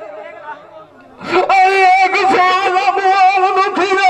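Male folk singer's voice through a microphone and PA, in the high, wavering Punjabi dhola style. It fades out into a brief lull about a second in, then comes back loud over a steady held note that runs on.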